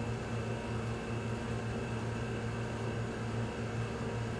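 Steady mechanical hum of a crane's motor as it carries a hanging load, a low drone with a hiss over it.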